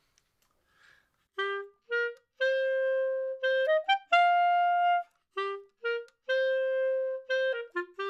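Clarinet playing a rock-style study phrase of short, separated notes and longer held ones, climbing in pitch. The phrase is played twice, starting about a second and a half in.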